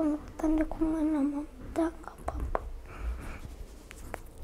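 A child whimpering while crying: short, wavering moans in the voice during the first two seconds, then quieter breathing sounds.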